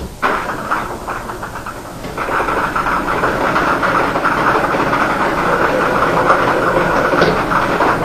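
Numbered plastic lottery balls tumbling inside a clear, hand-turned ball drum, a dense rattle that grows louder about two seconds in.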